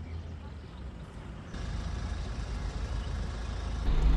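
Steady low rumble of outdoor background noise that jumps louder and fuller about a second and a half in.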